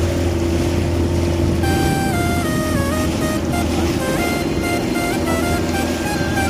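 Motorboat engine running with a steady low drone and rushing water noise. A stepped musical melody plays over it from about a second and a half in.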